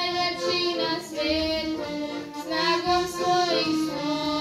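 Children singing a song to piano accordion accompaniment.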